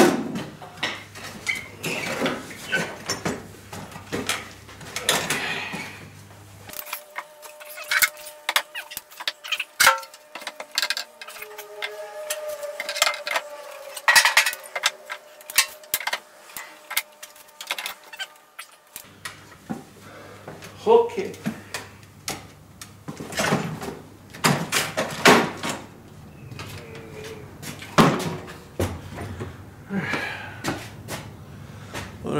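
Long-handled garden tools (shovels, a snow shovel and rakes) knocking and clattering as they are set one after another onto wooden wall brackets: a long run of irregular knocks and clicks.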